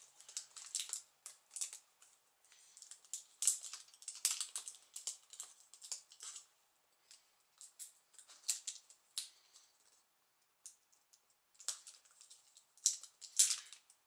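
Adhesive tape and the small plastic connector of a laptop LCD display cable being handled and worked loose by hand: a light, irregular scatter of small clicks and crackles, with a lull about two-thirds of the way in and a few sharper clicks near the end.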